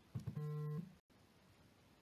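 A short musical note with a guitar-like tone, held for about half a second after a couple of clicks, then cut off, leaving faint background hiss.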